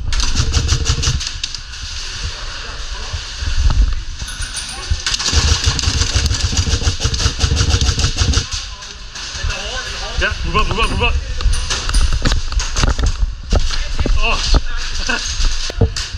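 Airsoft guns firing in rapid strings of clicks, heaviest in the middle, with players' voices shouting in the background.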